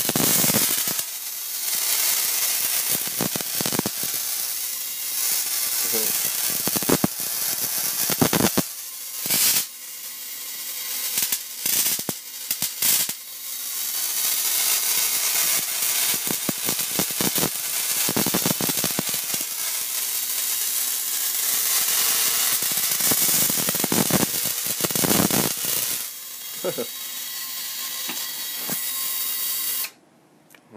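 Miniature Tesla magnifying transmitter throwing high-voltage sparks from its can topload to a hand-held wire: a continuous loud crackling hiss of streamer breakout. It drops out briefly several times about nine to thirteen seconds in and cuts off suddenly at the end.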